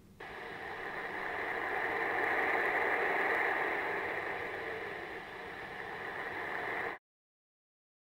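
Moshi voice-response alarm clock playing its sleep sound through its small speaker: a steady hiss of noise that swells for about three seconds and then eases off. It cuts off abruptly about seven seconds in.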